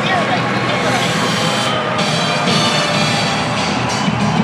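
Music over an arena's public-address system, with a voice heard briefly at the start, over the steady din of a packed crowd during a hockey pregame intro. Held musical tones come in about halfway through.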